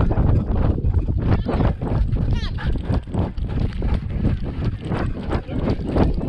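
Husky's paws thudding on packed dirt in a quick steady rhythm as she trots and runs, heard through a camera harness on her back with fur and strap rubbing on the mount. A brief high wavering cry about halfway through.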